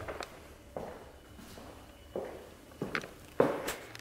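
A few soft, unevenly spaced footsteps of a person walking indoors.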